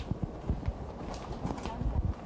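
Chalk writing on a blackboard: a quick, irregular run of taps and short scrapes as the characters are struck out.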